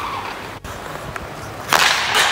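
A hockey stick shooting a puck on the ice near the end: one sharp crack that echoes around the rink.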